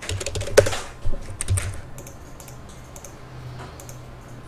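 Computer keyboard typing: a quick run of keystrokes in the first second and a half, then a few scattered clicks over a faint low hum.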